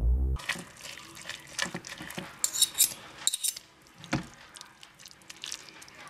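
Two metal forks clicking and scraping against the slow cooker's crock, pulling apart cooked chicken breast in broth. The strokes come irregularly, with a few sharper rattles near the middle. Background music cuts off just after the start.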